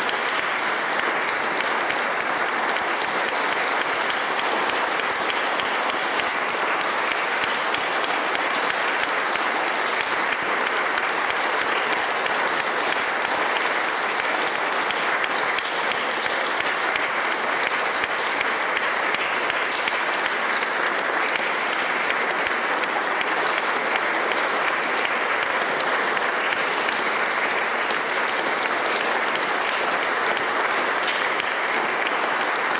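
Audience applauding steadily, without a break.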